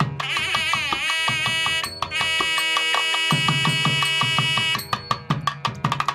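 South Indian temple music: a nadaswaram (double-reed pipe) playing a melody with bending, ornamented notes over thavil drum strokes, which grow denser after about three seconds and become rapid strikes near the end.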